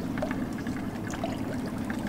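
Steady wash of water among jetty rocks, with a low steady hum beneath it and a few faint ticks.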